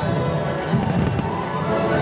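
Fireworks bursting with a cluster of sharp cracks and pops about a second in, over loud orchestral music from the show's sound system.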